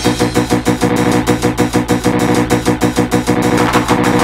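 Old-school gabber (hardcore techno) track: a fast, driving drum beat under steady, sustained synthesizer tones.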